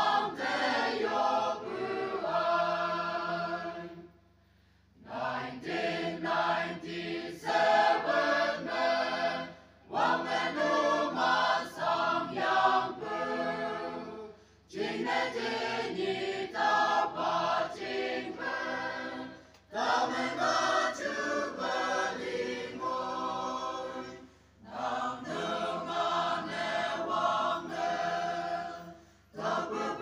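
A choir singing in phrases about five seconds long, with short breaks between them.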